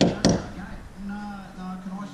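Two sharp hammer strikes, about a quarter second apart, tapping a 6 mm steel rod into a hole drilled in brick to serve as a wall tie.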